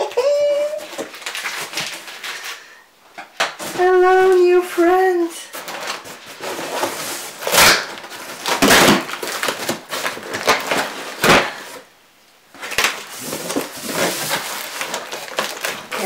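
A large cardboard shipping box being handled and pulled open by hand: irregular scraping and rustling of cardboard, with several loud tearing sounds in the second half.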